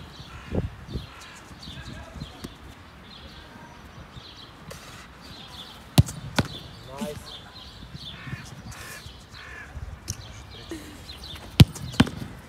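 Sharp thumps of a football being struck or caught in goalkeeper gloves: one about six seconds in, another just after, and a third near the end, with softer thuds in the first second as a keeper comes down on artificial turf.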